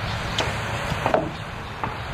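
Steady outdoor background hiss with a few faint short ticks or taps.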